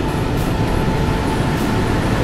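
Automatic car wash's rotating brushes scrubbing against the car's side windows, heard from inside the cabin as a loud, steady swishing rumble.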